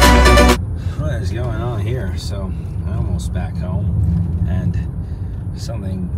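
Electronic background music cuts off about half a second in, leaving the steady low road and engine noise inside a Mercedes-Benz car's cabin while driving. A voice is heard in snatches during the first few seconds.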